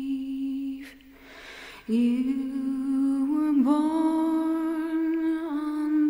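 A woman's voice singing long held notes with no instrumental backing. The note drops away about a second in, then a new low note comes in and steps up in pitch before being held again.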